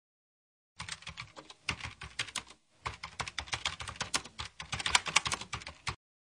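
Rapid, irregular computer keyboard typing clicks, a typing sound effect, starting about a second in, pausing briefly in the middle, then running on until it stops just before the end.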